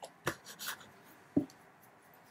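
Light handling sounds from painting close to the microphone: a couple of sharp taps, a short scratchy rustle, then a single duller knock about a second and a half in.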